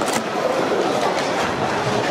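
Continuous clatter of plastic sport-stacking cups from many tables, echoing in a large sports hall, with one sharper clack just after the start.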